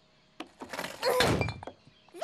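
Cartoon sound effect of a hardened mud slab cracking and breaking apart as it is pulled open: a single click, then about a second of crunching.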